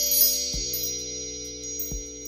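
Logo-intro sound effect: shimmering chime and sparkle tones ringing over a held low chord, with a soft low thud about half a second in and another near the end.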